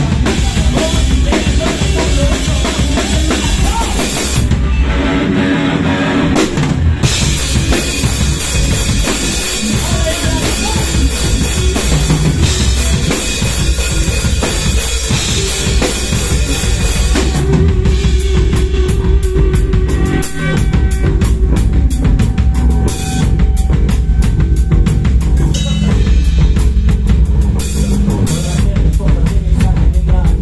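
Live rock band playing loud and continuous, with the drum kit to the fore (bass drum, snare, cymbals) over electric bass and electric guitar. The cymbals drop out briefly about five seconds in, and from about halfway a fast, even cymbal beat drives the rest.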